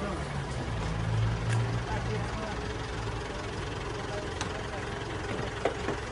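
A low, steady engine rumble with indistinct voices over it and a few short clicks.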